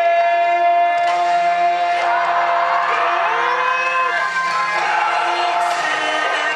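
Yosakoi dance music played over the stage sound system, with one long held note, and a group of voices shouting over it from about a second in.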